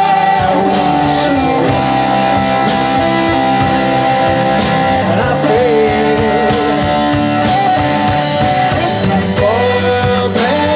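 Live blues band playing a song with electric and acoustic guitars, electric bass and drum kit. A lead line wavers in pitch about halfway through.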